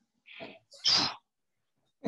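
Two short breathy bursts of a man's voice, the second louder and hissier, an excited exhale during mimed high fives.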